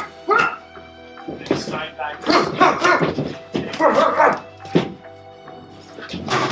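Background music with steady sustained tones, and short voice-like cries over it several times.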